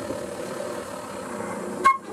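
Free jazz ensemble playing softly: a quiet held saxophone note, with a short, sharp higher note near the end.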